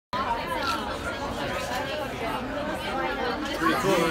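Babble of many people talking at once in a crowded restaurant dining room, with a nearer voice saying "cool" at the very end.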